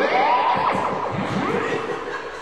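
Theremin gliding up in pitch, then settling on a steady held note near the end, as its tone fades.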